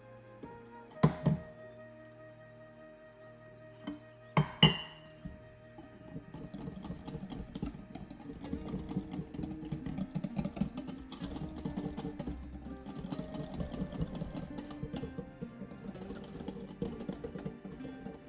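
Two sharp knocks about one and four and a half seconds in, then from about six seconds a wire whisk beating a thick batter in a glass bowl, fast steady clicking and scraping against the glass. Soft background music plays throughout.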